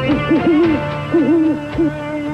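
Barred owl hooting in two wavering phrases, the second starting about a second in, over sustained background music notes.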